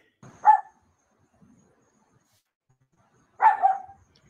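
Small dog barking: two short barks, one just after the start and another about three seconds later.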